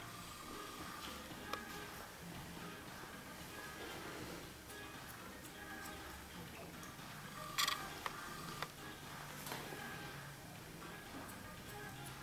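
Faint background music with a few sharp clicks of hair-cutting scissors snipping. The loudest snip comes about seven and a half seconds in.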